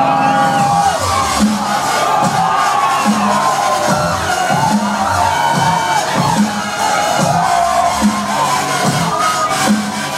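Dubstep played loud over a club sound system, with a bass note repeating a little faster than once a second, and a crowd cheering along.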